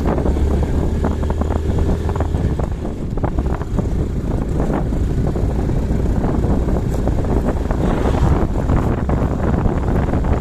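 Wind buffeting the microphone of a moving motorcycle, crackling and gusty, with the motorcycle's engine and road noise as a steady low drone underneath.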